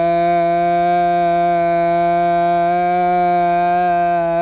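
One voice holding a single long sung note at a steady pitch, unaccompanied, in a home-recorded a cappella pop cover.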